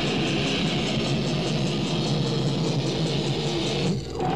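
Live rock band playing loud distorted electric guitar with bass and drums, driving along on a rapid, even beat.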